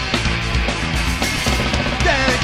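Punk rock band playing live: electric guitars, bass and a drum kit in the instrumental opening of a song, with no vocals yet.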